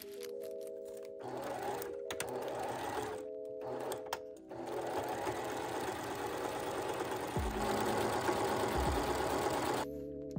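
Electric domestic sewing machine with a walking foot stitching a quilting line through a placemat with greaseproof paper over its anti-slip backing. It starts about a second in, pauses twice in short stops, then runs steadily from a little before halfway.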